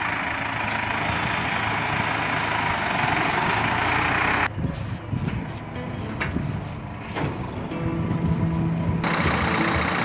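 Massey Ferguson 4708 diesel tractor engine running while it handles cotton bales, with a steady noisy hiss over it. The sound changes suddenly about four and a half seconds in, when scattered clicks and knocks come through, and again near the end.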